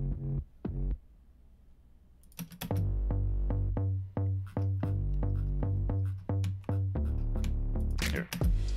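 A soloed bass part of an electronic pop track playing back from the session: a few short low notes, a pause, then from about two and a half seconds in a steady run of punchy low notes.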